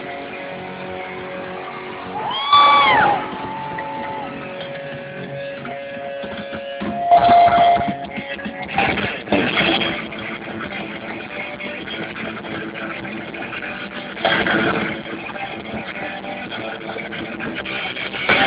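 Electric guitar of a thrash metal band at a live show, recorded from the audience: held notes, one bent note rising and falling about two and a half seconds in, and short louder bursts around seven, nine and fifteen seconds.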